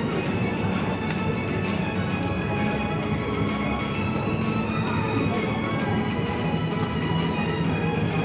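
Music with a steady beat, roughly one beat a second, over many sustained notes.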